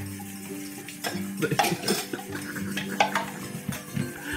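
Dishes and bowls knocking and clattering in a kitchen sink as they are washed by hand, a handful of short sharp knocks spread through.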